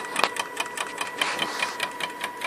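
Small 200-step stepper motor salvaged from a printer, driven by an A4988 chopper driver, moving the drilling machine's carriage: a steady high tone with rapid, even clicking.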